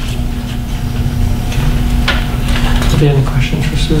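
Papers rustling and being leafed through at a conference table, with scattered small handling sounds, over a steady low electrical hum and room noise. A voice starts near the end.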